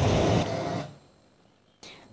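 Steady background noise, a hiss and rumble without any distinct event, that cuts out about a second in and leaves near silence.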